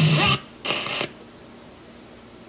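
Bose Wave Radio/CD (AWRC1G) playing rock music from an FM station, which cuts off about a third of a second in as the unit is switched to its AUX input. A brief half-second burst of sound follows, then only a faint steady hiss from the AUX input.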